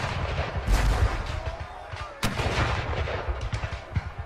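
Battle soundtrack of black-powder musket and cannon fire: a string of shots over a continuous rumble, with a heavy low boom about three-quarters of a second in and another sharp report a little past two seconds.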